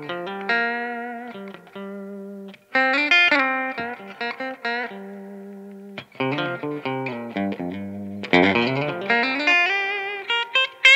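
Ambler Icarus electric guitar with McNelly pickups, played with a clean tone through a Rift Amps PR18 amplifier. Picked single notes and ringing chords come with short pauses, then a louder, busier run near the end with a swooping change in pitch.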